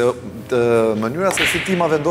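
A sharp click of a pool cue striking the ball right at the start, followed by a man's voice holding one long tone and then a short hiss.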